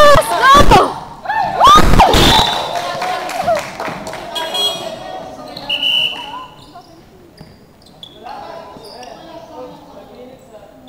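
Basketball bouncing on a hardwood gym floor amid loud shouting voices, echoing in a large sports hall. It is loud for the first three seconds, then much quieter.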